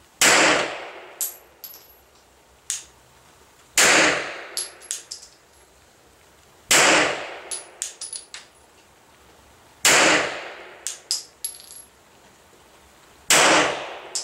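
Five slow, deliberate one-handed shots from a 9mm Glock 34 pistol, about three seconds apart, each bang dying away over about half a second. After each shot come light metallic tinkles as the spent brass casings land.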